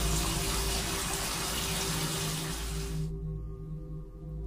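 Tap water running into a bathtub, a steady rush that cuts off suddenly about three seconds in.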